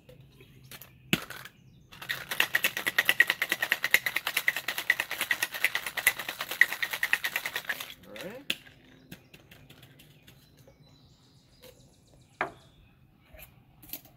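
Ice rattling rapidly inside a metal two-tin Boston cocktail shaker as a cocktail is shaken hard for about six seconds. Just before, the tins knock together as they are sealed. Afterwards come a few light metal clicks and one sharp knock a couple of seconds before the end.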